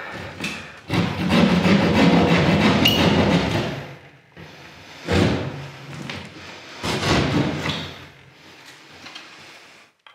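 Ceiling board being cut with a utility knife and torn away, with a long stretch of crunching and tearing, then two thuds about two seconds apart.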